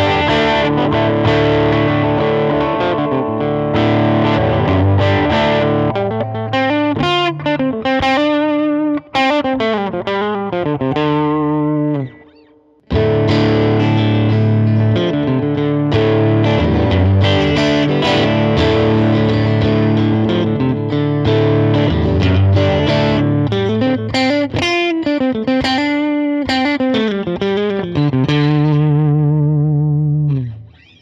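Electric guitar played through a Mesa Boogie California Tweed 20-watt 1x10 tube combo, set for a tweed or brown-panel style tone with the mids cranked and bass and treble around noon. Sustained chords and bent notes from a red semi-hollow guitar, then, after a brief break near the middle, from a Fender Telecaster-style guitar.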